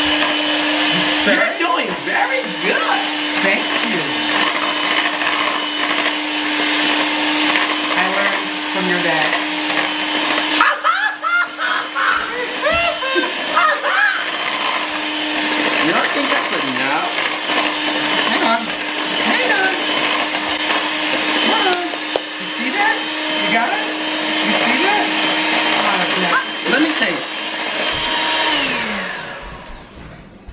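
Electric hand mixer running steadily, its beaters whisking brownie batter in a bowl. Near the end the motor's pitch slides down as it is switched off and winds to a stop.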